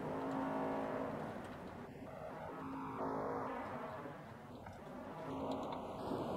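Faint background music with soft held notes.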